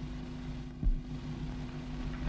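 Steady hum and hiss of an old film soundtrack, with one dull low thump a little under a second in.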